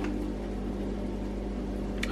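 A steady low electrical hum with faint hiss, unchanging throughout.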